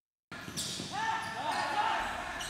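Echoing sound of a team practising in an indoor gym: players' voices calling out and thuds on the hard court floor, starting suddenly a moment in after a brief silence.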